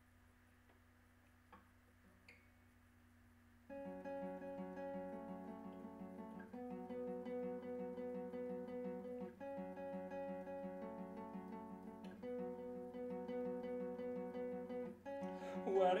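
Acoustic guitar intro: after a few seconds of faint room hum with a couple of small clicks, the acoustic guitar comes in about four seconds in, playing ringing chords that change roughly every three seconds. A singing voice enters right at the end.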